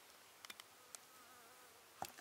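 Near silence, with a few soft clicks about half a second in and once more at about one second as a plastic spatula scrapes thick sauce from a blender cup into a glass dish. Faint wavering buzz of a flying insect in the middle.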